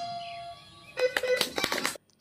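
Bihu dance music with dhol drums coming to an end: the last drum stroke and a held note ring out and fade within the first half second, then after a short lull come a few scattered short knocks and sounds.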